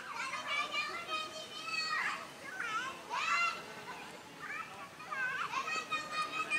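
Young, high-pitched voices shouting and calling out on a football pitch, several shouts one after another, some long and drawn out.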